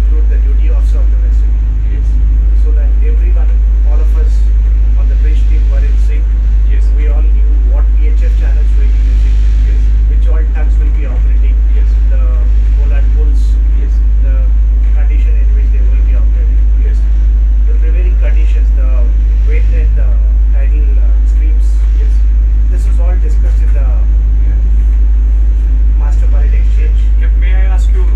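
Pilot boat's engine running with a steady, loud low rumble, heard inside the wheelhouse beneath men talking.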